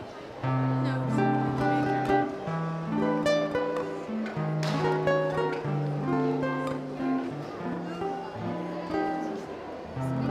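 Small live acoustic band starting a French song's instrumental intro about half a second in: strummed acoustic guitars under held bass notes, with a violin carrying the melody.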